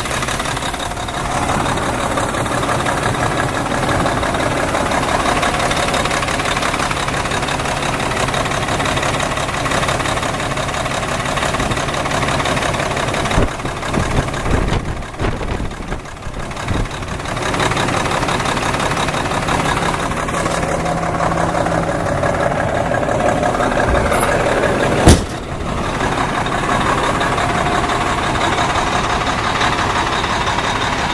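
A 1996 Freightliner FLD112 heavy truck's diesel engine idling steadily, heard close to the open engine bay. The sound dips and bumps unevenly for a few seconds midway, and there is one sharp knock about five seconds before the end.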